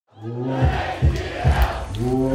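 Concert crowd shouting over a bass-heavy live hip-hop beat, with a deep kick drum about twice a second. It fades in from silence at the very start.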